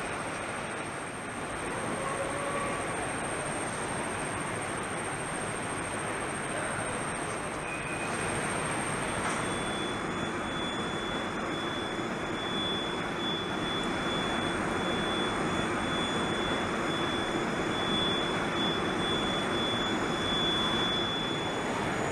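A steady rushing noise, like air or machinery running, with thin high whistling tones; a second whistling tone enters about ten seconds in.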